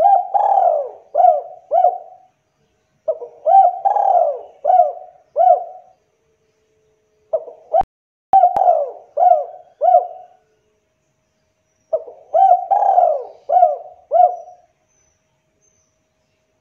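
Spotted dove (tekukur) cooing: four bouts of its song about four seconds apart, each a quick run of four or five rolling coos.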